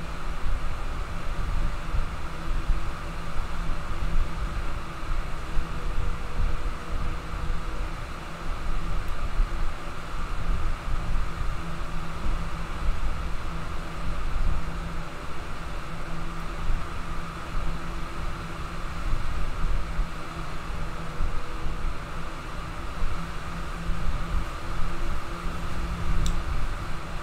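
Steady background noise with no speech: a low, unevenly fluctuating rumble with a hiss above it and a faint steady hum.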